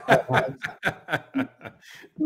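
Men laughing: a run of short rhythmic bursts of laughter, about four a second, trailing off near the end.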